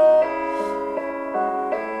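Piano playing slow sustained chords that change about every half second, a recorded accompaniment with no voice over it.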